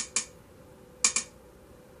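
Ticking clicks from a tablet as the temperature slider in the Ember mug app is dragged: the last two of a quick run at the start, then two more in quick succession about a second in.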